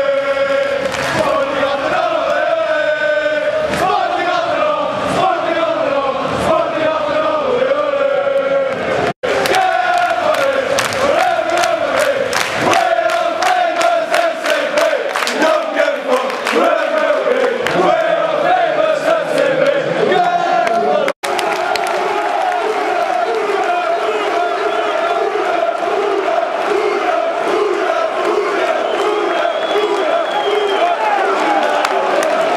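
A stand full of football supporters chanting and singing in unison, with fast rhythmic clapping joining in through the middle stretch. The chant is broken twice by a split-second gap in the sound.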